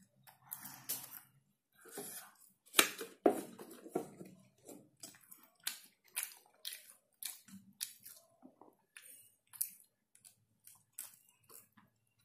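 Close-miked chewing of McDonald's French fries, with sharp, irregular mouth clicks and crackles, and the paper fries pouch crinkling as it is handled. The loudest sounds come about three seconds in.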